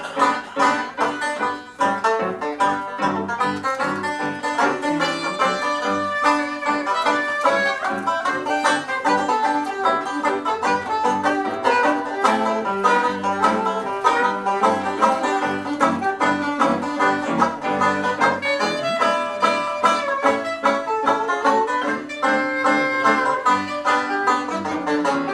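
Classic 1920s-style jazz played live: a banjo picking rapid notes, with a saxophone playing a melody line alongside.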